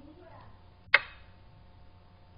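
A single sharp click about a second in, with a brief ringing tail.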